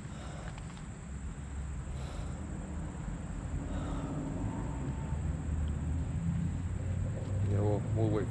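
A vehicle engine idling with a steady low rumble that builds slightly, and faint voices near the end.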